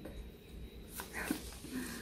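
A woman's short, soft, breathy giggle: a few brief voiced sounds in the second half, after a small click about a second in.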